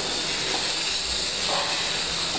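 A steady high-pitched hiss with no distinct events.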